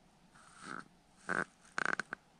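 Three short, breathy puffs of a person breathing or sniffing close to the microphone, the last two louder.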